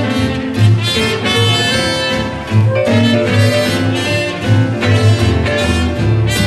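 Live traditional New Orleans-style jazz band playing: clarinet and trumpet carry the melody over piano, guitar, drums and an upright bass plucking about two notes a second.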